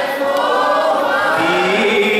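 Many voices singing a Greek laïkó song together, a live audience singing along with the band. A bass line comes in about one and a half seconds in.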